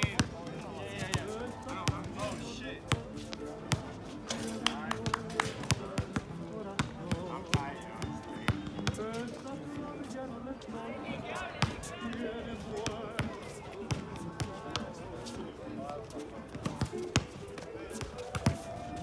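A basketball bouncing on an outdoor hard court as players dribble: many sharp, irregular bounces throughout, with voices and music underneath.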